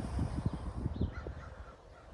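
Low, uneven rumbling of wind buffeting the microphone in the first second or so, with a faint short bird call a little over a second in.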